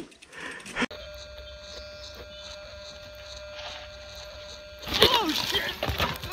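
A mountain bike and rider crashing: about five seconds in, after a few seconds of steady low hum, a sudden clatter of knocks and a sharp falling-pitch cry from the rider.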